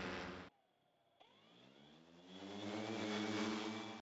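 Quadcopter drone's electric rotors buzzing. The sound cuts off abruptly half a second in, then a rotor hum rises in pitch and grows louder as the motors spin up.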